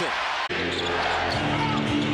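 Basketball game sound in an arena: a ball dribbling on the hardwood court and sneakers squeaking over steady crowd noise. The sound cuts abruptly about half a second in, and steady sustained tones come in after the cut.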